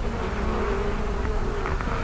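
Honeybees buzzing around an open hive and the frame held up from it, a steady hum.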